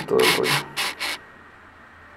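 A few short rubbing noises within the first second, over two spoken words, then quiet room tone.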